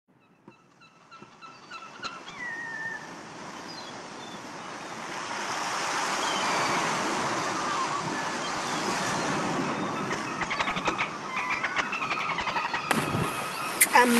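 Ocean surf fading in to a steady wash, with a few short, quickly repeated bird calls in the first two seconds and a falling call about two seconds in.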